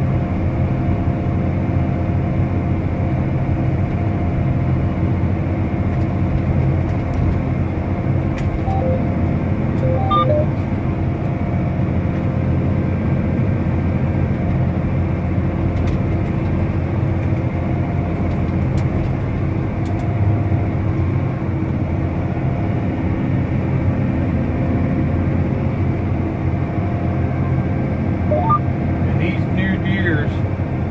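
John Deere tractor engine running steadily, heard from inside the closed cab as an even low drone. A few faint short tones sound about ten seconds in.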